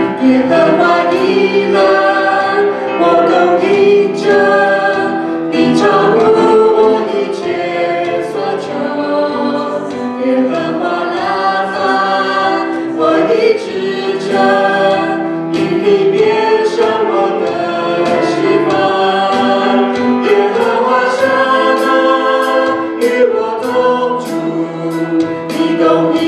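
A worship team of three singers, two women and a man, singing a Chinese worship song together into microphones through the PA, with keyboard accompaniment.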